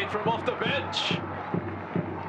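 Speech with a steady low hum underneath, and a short hiss about a second in.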